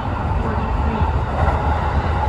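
Kintetsu express train running at speed, heard from inside the front car: a steady low rumble of wheels on the rails.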